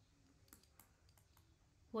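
Faint, scattered clicks and taps of a pen stylus on a tablet surface as words are handwritten.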